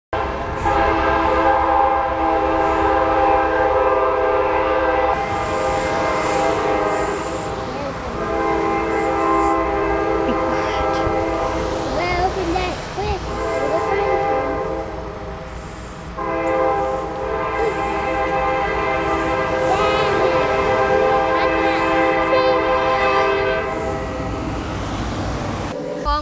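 CSX diesel locomotive's air horn sounding long, held blasts as it approaches a grade crossing, with a short break about sixteen seconds in before a final long blast.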